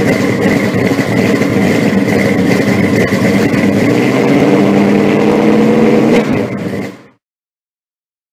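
A car engine running hard at high revs, fairly steady in pitch, with a thin steady whine above it. It fades out quickly about seven seconds in.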